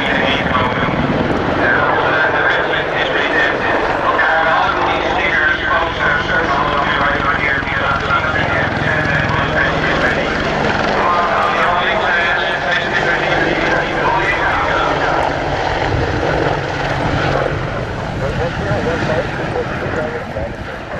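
RNLAF AH-64D Apache attack helicopter flying a display pass, its twin turboshaft engines and rotors running steadily, with a voice speaking over it.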